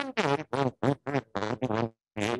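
A voice comes in abruptly out of dead silence and runs on in short, clipped syllables with brief gaps between them.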